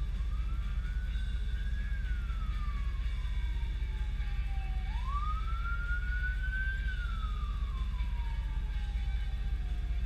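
Ford 460 big-block V8 idling steadily in the truck cab, a low even rumble. Over it a distant emergency-vehicle siren wails, rising and then slowly falling in pitch twice.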